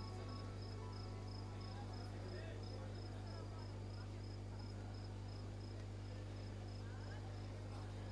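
Steady low electrical hum with a faint high-pitched pulsing tone about three times a second, over faint background chatter.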